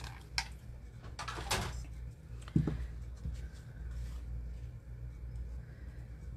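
Paper and craft tools being handled on a work table: a few light clicks, a short rustle of paper, and a knock a little over two and a half seconds in, over a low steady hum.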